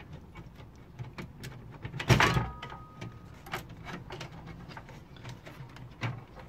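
Screwdriver working on the slot-card bracket screws of an old metal PC case: scattered light clicks and taps, with one louder metallic clank about two seconds in that rings briefly.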